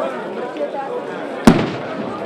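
A single sharp bang about one and a half seconds in, over continuous chatter of several people talking.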